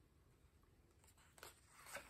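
Near silence, then faint paper rustling near the end as a picture-book page is lifted and turned.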